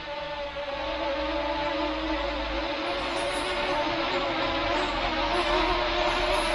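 Small F007 Pro quadcopter's motors and propellers whining steadily as it comes down, growing a little louder in the first second.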